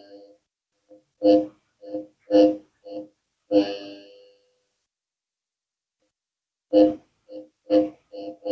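Short electronic buzzes from a small speaker driven by a light-detecting solar panel through a small amplifier board. About nine brief bursts come in two groups, all on the same few steady pitches, with a pause of about two seconds in the middle.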